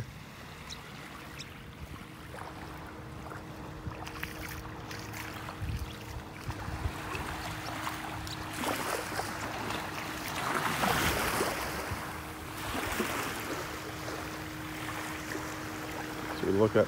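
Small waves washing in over a shell-covered beach, a soft rushing wash that swells louder about nine to thirteen seconds in. A faint steady hum runs under it.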